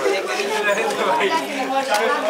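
Several people talking at once: a steady background chatter of voices.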